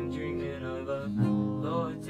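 Acoustic guitar strummed chords ringing on, with a new chord struck a little past halfway.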